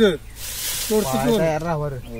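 A long breathy hiss, like a drawn-out 'sss', for about a second near the start, then a voice breaks in with a held, wavering vocal sound.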